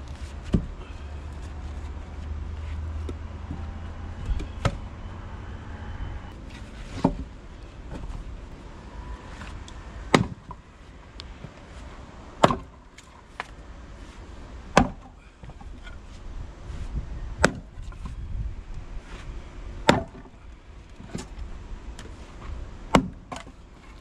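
A 6 lb splitting maul striking red oak rounds stood in a tire and splitting them: about ten sharp strikes, irregularly one to three seconds apart, coming more often in the second half.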